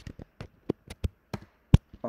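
Keystrokes on a computer keyboard: about nine sharp clicks at an uneven pace, the loudest near the end.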